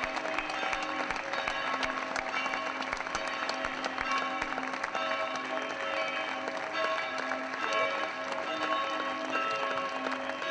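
A crowd applauding steadily as a coffin is carried out of a church, with music of sustained notes playing throughout.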